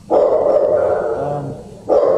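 Dogs barking in a shelter kennel, a loud, dense, echoing din that dips briefly near the end and starts up again.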